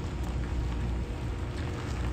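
The Ford F-250's 6.2-litre gas V8 running as the pickup rolls slowly across gravel, its tyres crunching on the stones. Steady low rumble with an even crackling hiss over it.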